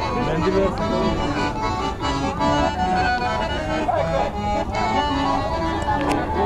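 Accordion playing a lively folk dance tune live, with voices of the crowd beneath it.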